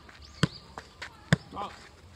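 Soccer ball being kicked during juggling: two sharp thuds about a second apart, with fainter taps between them. A short pitched call sounds near the end.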